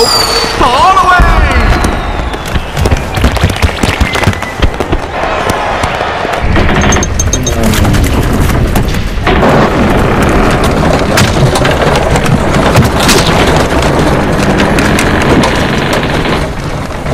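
Busy film soundtrack: music mixed with repeated booms and sharp bangs, with vocal sounds in among them.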